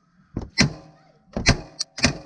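Hammer striking the steering knuckle of a 2008 Honda FourTrax Rincon's front suspension, about five sharp metallic blows with a short ring after each, to knock the upper ball joint loose.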